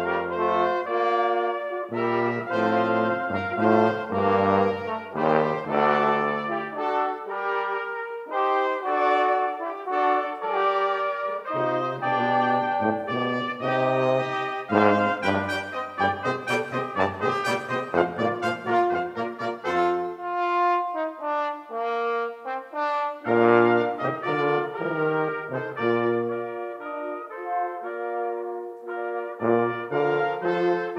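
A brass quintet of two trumpets, French horn, trombone and tuba playing live in chords. The tuba's low bass line drops out for stretches and comes back several times.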